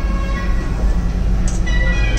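Old-style lift car with a collapsible grille gate running between floors: a steady low rumble and hum inside the cabin.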